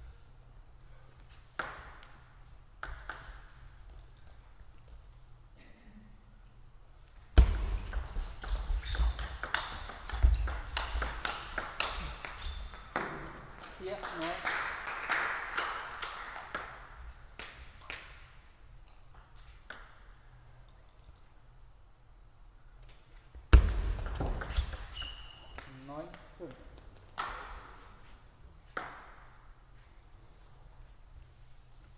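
Table tennis rallies: the celluloid ball clicking in quick succession off bats and table, once for about five seconds from about seven seconds in and again shortly after the middle of the second half. Each rally is followed by a short shout from a player.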